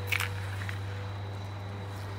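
A steady low hum, with one short sharp click just after the start and a fainter one a little later.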